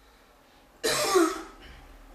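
A man clears his throat with a single short, harsh cough, about a second in, after a moment of quiet.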